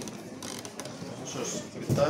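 Quiet room noise with small clicks and rattles.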